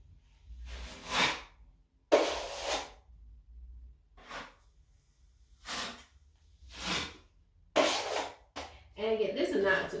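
Metal putty knife scraping across a wall, spreading a thin skim coat of wet joint compound: about seven separate strokes, each under a second long.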